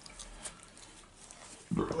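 A dog sniffing and snuffling up close to the microphone, faint, with a louder low rustle near the end.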